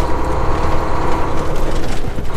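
Semi truck's diesel engine running as the truck pulls away from a stop, heard inside the cab: a loud, steady low rumble with a faint steady hum above it.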